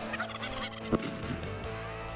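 Wild turkey gobbling, a rapid rattling call, with a brief sharp sound about a second in.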